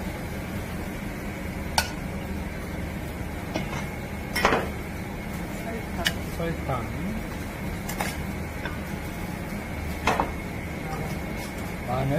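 Occasional clinks and knocks of a metal ladle and a small bowl against a stainless steel mixing bowl as seasonings are added, about six in all, the loudest about four and a half seconds in, over a steady background hum.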